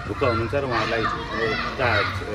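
Speech: a voice talking without pause, with no other sound standing out.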